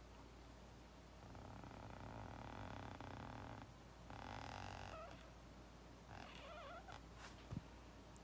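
Felt-tip marker drawing a lowercase b on paper, heard as faint rubbing strokes: a long stroke, a brief stop, then a shorter one, with lighter scratching after.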